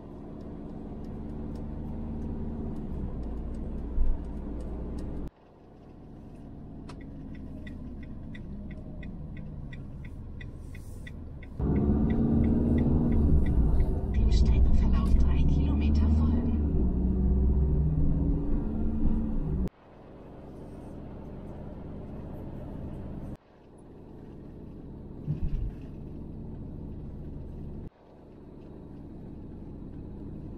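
Road and engine rumble heard inside a motorhome's cab while driving, in several short clips joined by abrupt cuts. It is loudest for several seconds in the middle, and a run of even ticks, about three a second, comes early on.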